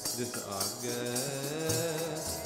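Gurbani kirtan: a man singing a devotional line to harmonium, with tabla accompaniment.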